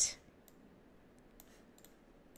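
A few faint, scattered clicks of a computer mouse against near silence.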